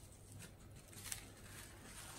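Faint rustling of plastic cling film being handled and stretched over a plastic cup, with a couple of soft crinkles about half a second and a second in.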